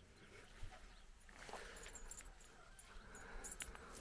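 Near silence: faint outdoor background with a few soft, brief clicks.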